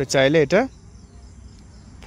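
A voice from a TikTok video playing on a phone's speaker. There are a few quick, pitched syllables in the first half-second, then a pause with only faint background noise.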